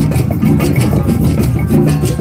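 Drum circle playing: hand drums and shakers beating out a steady rhythm.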